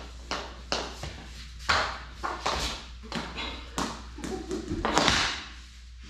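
Hockey stick and ball knocking on a concrete floor: a run of irregular sharp taps, each echoing in a bare basement.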